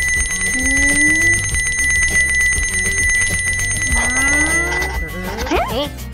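Electric school bell ringing with a fast rattle for about five seconds, then stopping, over background music.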